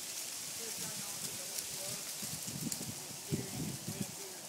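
Outdoor background hiss with light crackling and rustling, a few faint short voice-like calls, and a cluster of soft knocks and handling noise in the second half.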